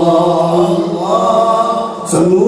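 Male voices singing an Islamic devotional chant a cappella through microphones and a PA, in long drawn-out notes. The melody steps up in pitch about halfway through and dips near the end.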